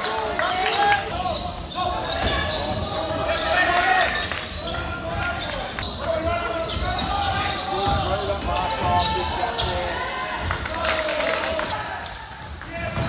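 Basketball game sound: a ball bouncing on the court with many short knocks, amid indistinct voices.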